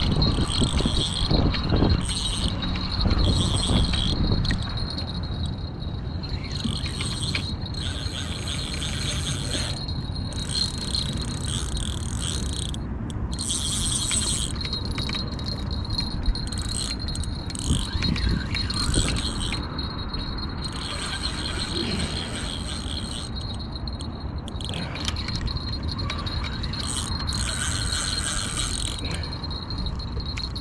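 Spinning reel cranked in uneven spells under the load of a large hooked fish, its gears whirring, over a steady low rumble.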